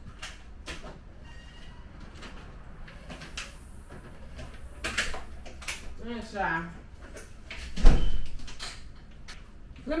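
A back door being handled, with scattered clicks and knocks, then a heavy thump about eight seconds in as the door shuts.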